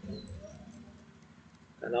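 Quiet room tone with a faint murmur of a man's voice at the start, then a man begins speaking near the end.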